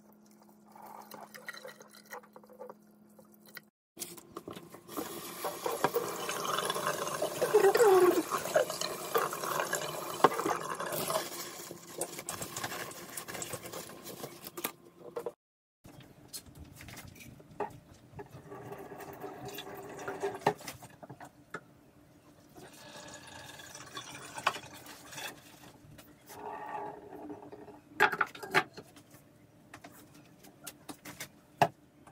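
Water pouring and splashing into a stainless-steel kitchen sink for about ten seconds, loudest in the middle. After a break, quieter scattered knocks and handling sounds follow.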